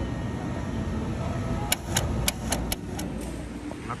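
Steady low background din of a large store's food court, with a quick run of five or six sharp clicks a little before the middle, about four a second.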